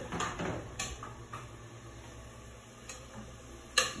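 A few sparse light clicks and clinks of aluminium pots and lids being handled on a gas stovetop, the sharpest one just before the end.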